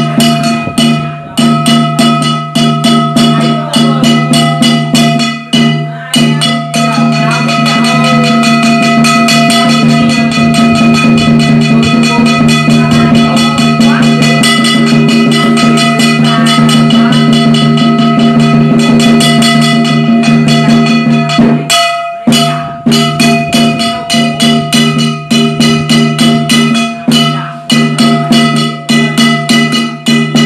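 Dao ritual percussion: a drum and small metal cymbals beaten rapidly, the metal ringing on steadily under the strokes. The beating runs as separate phrases with short breaks, swells into a continuous fast roll through the middle, and stops briefly before separate beats resume near the end.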